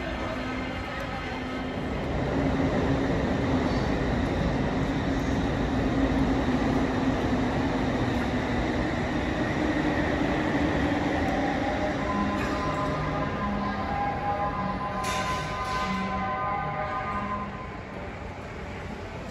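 Electric train running past on the tracks: a long, loud rush of wheel and running noise over a steady hum, with several steady tones joining in over its last few seconds and a short hiss about three seconds before it cuts off suddenly near the end.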